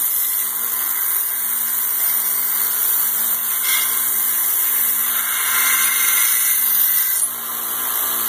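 Harbor Freight 1x30 belt sander running with a steel knife blade held against the belt: a steady, high grinding hiss of steel on the abrasive over the motor's hum. The grinding drops off about seven seconds in as the blade comes off the belt.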